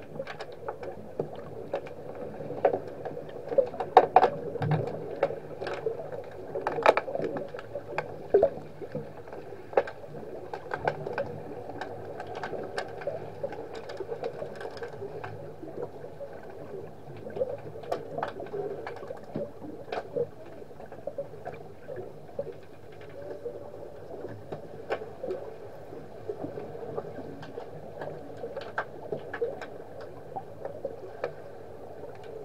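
Underwater swimming-pool sound picked up by a submerged camera during an underwater hockey game: a steady muffled water wash with frequent sharp clicks and knocks, the loudest about four and seven seconds in.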